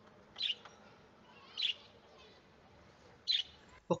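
A small bird chirping three times, short high chirps spaced one to two seconds apart, over a faint steady room background.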